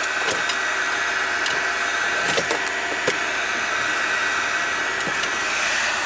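Steady fan noise of a small plug-in heater blowing inside a car, with a few light clicks.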